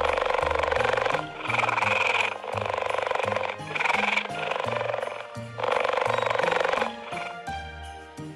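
Cheetah call, most likely a recording played over the footage: a rough call repeated in six bursts of about a second each, over light background music.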